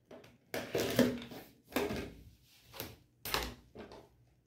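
Rotary cutter rolling along the edge of an acrylic ruler, slicing through fabric on a cutting mat: one scraping stroke about a second long, then a few shorter scrapes and a dull knock as the ruler and cutter are shifted on the mat.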